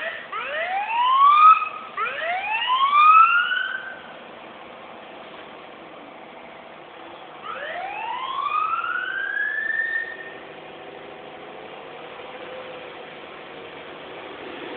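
Emergency vehicle siren sounding a series of rising whoops: several in quick succession in the first four seconds, then one longer rise about eight seconds in.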